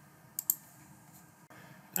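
Two quick clicks of a computer mouse close together about half a second in, then a fainter click near the end, over low room hiss.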